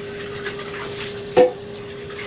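Kitchen tap running into the sink with a steady hiss and an even hum, while a percolator is rinsed out. A single sharp clank about one and a half seconds in as the pot is handled.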